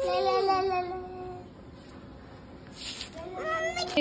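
Young zebu calf mooing once, a drawn-out bawl of about a second and a half that falls slightly in pitch.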